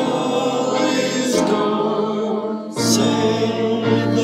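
Small congregation singing a hymn together, accompanied by piano. The singing breaks briefly between phrases, about a second and a half and about three seconds in.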